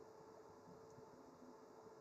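Near silence: faint room tone with a weak steady hum.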